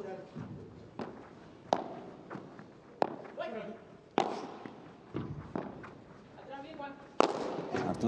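Padel rally: the ball is struck back and forth by rackets and bounces off the court, giving about five sharp hits spread over the span, the last and loudest near the end.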